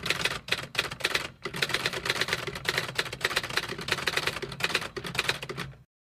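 Typewriter sound effect: a quick, continuous run of key clacks accompanying text being typed on screen, cutting off abruptly just before the end.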